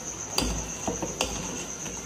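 Metal ladle stirring milk in a steel pot on the stove, knocking against the pot a few times as sugar is mixed into the heating milk.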